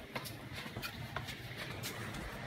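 Household ventilation fans running with a steady low hum, with a few light clicks and knocks scattered over it.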